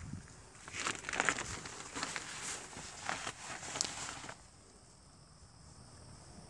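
Crinkling and rustling of a mini greenhouse's plastic mesh cover as it is handled and pulled open, irregular and crackly, stopping suddenly a little past four seconds in.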